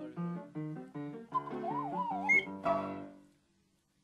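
An ocarina and a piano play together: the piano gives a run of chords while the ocarina's melody wavers up and down in pitch and jumps briefly higher. A last chord sounds nearly three seconds in, then the music breaks off and dies away.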